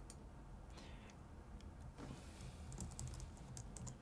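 Faint, irregular light clicks, sparse at first and more frequent in the second half, over a low steady hum.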